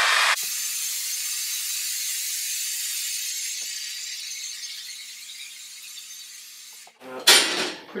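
Heat gun running, its fan blowing a steady rush of air over a faint low hum, drying freshly sprayed paint. It slowly grows fainter and switches off abruptly about seven seconds in.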